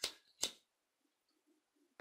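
A handheld lighter struck twice, two sharp clicks about half a second apart, to light a flame for singeing the trimmed end of the crochet thread.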